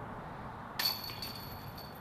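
A putted disc striking the metal chains of a disc golf basket about a second in, a sharp jingle whose ringing fades over about a second: the putt is made for a birdie.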